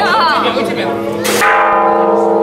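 A large temple bell ringing: it is struck sharply about one and a half seconds in and rings on with several steady tones, over the hum of a crowd. A wavering high-pitched sound is heard in the first second.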